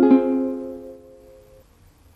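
An F minor chord strummed once on a Venezuelan cuatro, its four nylon strings ringing out and fading away over about a second and a half.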